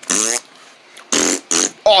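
A person imitating spitting with the mouth: a short buzzing raspberry, then a hissing spit sound about a second later.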